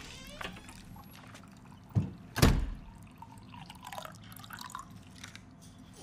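Water poured into a drinking glass, a brief rising liquid tone near the start, followed about two seconds in by two sharp knocks that are the loudest sounds.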